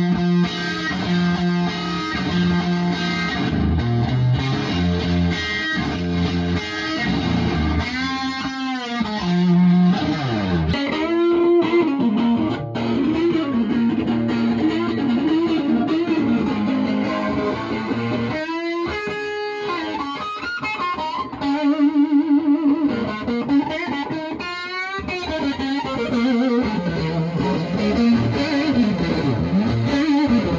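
Electric guitar, a vintage 1963 Fender Stratocaster, played through an amp: lead lines with frequent string bends and several passages of fast, wide vibrato.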